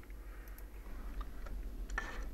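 A few faint, short clicks from a computer mouse and keyboard over a low steady hum.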